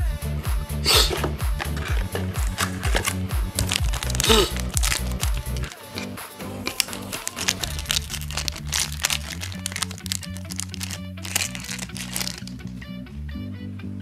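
Background music with a steady low bass line, over the crinkle and rustle of a foil trading-card booster pack being handled.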